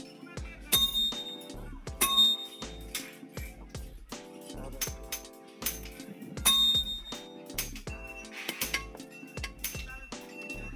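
Background music with a steady beat, over which iron is struck on a railway-rail anvil: three loud metallic clangs, about a second in, two seconds in and past six seconds, each leaving a brief ring.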